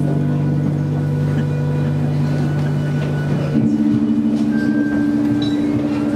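Live slow music of long sustained notes from violin and keyboard. A low held drone gives way to a higher held chord about halfway through.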